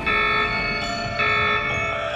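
Bell-like chimes in the soundtrack music: a ringing chord struck at the start and again about a second in, each ringing for roughly half a second before the next.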